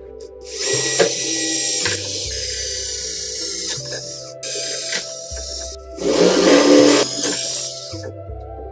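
Cordless drill boring holes through a bamboo board, running in about four bursts with short stops between, the loudest near the end.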